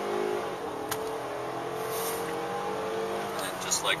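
A Lincoln's engine pulling hard under full acceleration, heard from inside the cabin, its note rising slowly as the car gains speed toward 60 mph.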